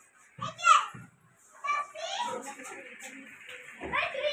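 Speech only: a short high-pitched voice call about half a second in, then overlapping voices chattering in a small room.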